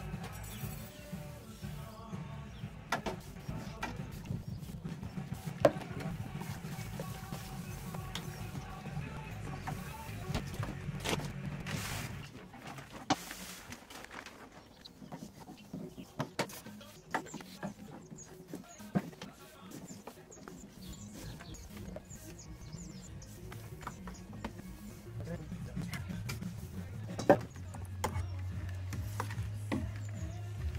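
Background music, with scattered sharp knocks and clinks as crushed malt is tipped into the water of a stainless-steel Brewzilla mash tun and stirred in with a paddle.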